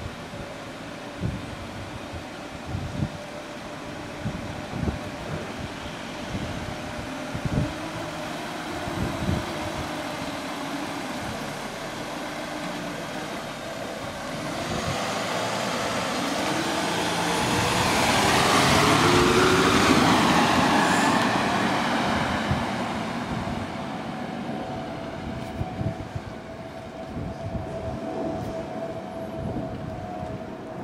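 A 1962 Mercedes-Benz classic car drives past, its engine growing louder to a peak about two-thirds of the way through and then fading away, its pitch rising and falling as it goes. In the first half, wind buffets the microphone.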